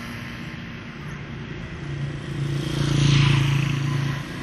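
Road traffic: a passing motor vehicle's engine hum that grows louder and peaks about three seconds in.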